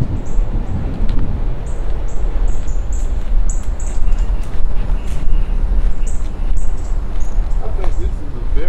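Wind buffeting the microphone with a steady low rumble, over short high chirps that repeat irregularly throughout.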